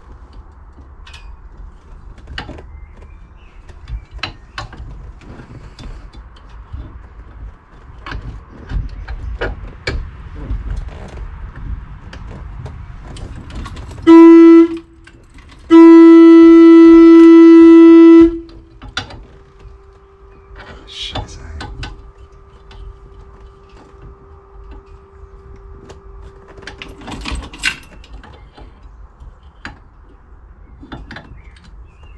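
Volkswagen T2 bus horn sounded while testing the horn on a newly fitted sport steering wheel: a short toot, then a steady single-note blast of about two and a half seconds. Around it, light clicks and knocks of hand work at the steering column.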